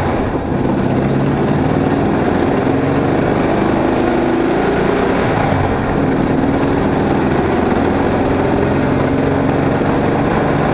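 A classic VW Beetle's air-cooled flat-four engine running as the car drives along, heard from inside the cabin with road and wind noise. The engine note dips briefly twice, about half a second in and near the middle.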